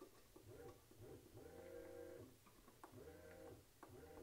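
Faint whine of a brushless robot actuator on an MIT Mini Cheetah-style controller as it rotates back and forth. Its pitch rises and falls with each of several moves.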